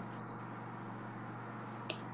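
Steady low hum and faint hiss of a live video-call audio line in a gap between speech, with a faint short high beep a fraction of a second in and a brief click just before the end.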